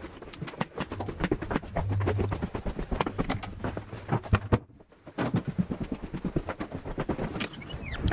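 Footsteps and handling knocks from a camera carried while walking, a run of irregular clicks and thuds with a low rumble. A little past halfway the sound drops out briefly, then the steps and knocks go on.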